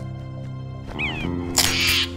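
Dramatic orchestral score with a cartoon bird's short falling squawk about a second in, then a loud, harsh burst of noise near the end.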